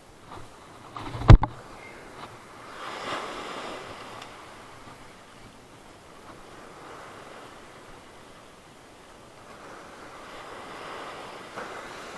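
Small surf breaking and washing up a sandy beach, swelling about three seconds in and again near the end. About a second in there is a single sharp knock.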